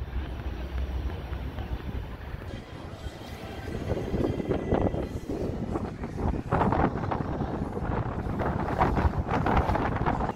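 Wind rumbling on the camera microphone outdoors. From about four seconds in it grows louder, mixed with short knocks and clicks.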